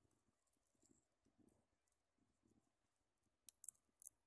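Near silence, with a few faint, sharp clicks near the end.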